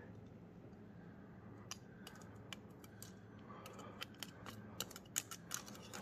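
Faint metallic clicks and scrapes of steel tongs against a cooling bismuth crust and the stainless pot, breaking the solidified edge of the melt; the clicks come closer together near the end.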